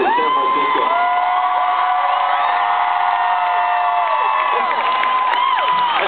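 A large concert crowd singing one long held 'oh' note on its own, many voices at different pitches. They slide up into the note at the start and break off in falling slides near the end.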